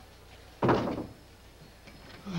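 A wooden panelled door slamming shut once, about half a second in: a single sudden thud that fades within half a second.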